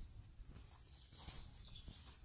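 Faint, muffled hoofbeats of a quarter-horse gelding moving over soft arena footing: a few dull, irregular thuds over a low rumble.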